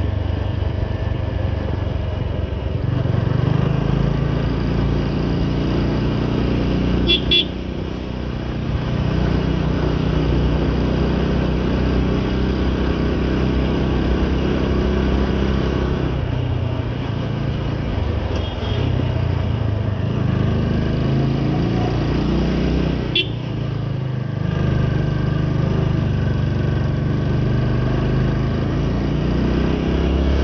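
Motorcycle engine running as the bike rides along, its note rising and falling with the throttle. The note drops away briefly about seven seconds in and again around 23 seconds, as if the throttle is closed for a moment.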